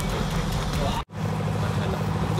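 A steady low rumble with faint voices in the background, broken by a brief cut to silence about a second in.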